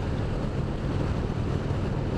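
Wind rushing over a helmet-mounted camera at highway speed on an Indian Springfield Dark Horse with no windshield, over the steady drone of its 111 cubic-inch (1,811 cc) V-twin at a constant cruise. The air is disturbed by the side draft off a semi truck just ahead.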